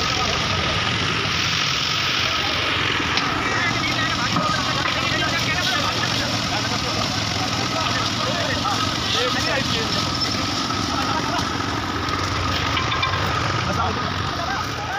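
Construction-site noise during a concrete roof-slab pour: a machine engine runs steadily under the voices of the many workers.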